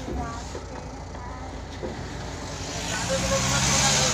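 Motor vehicle engine running, with a low hum and a hiss that grow louder near the end.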